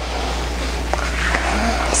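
Steady rushing noise that grows slightly louder as a person pushes herself up from lying on a yoga mat to sitting, the sound of her body and clothing moving and her breathing close to the microphone.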